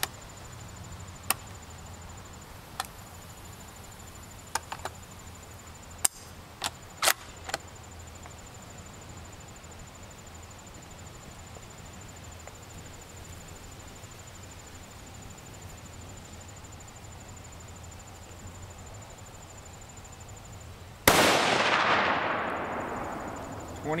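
A T/C Compass bolt-action rifle in .300 Winchester Magnum fires one loud shot near the end, its report echoing and fading away over about three seconds. Before the shot there are a few light clicks and knocks as the rifle is handled.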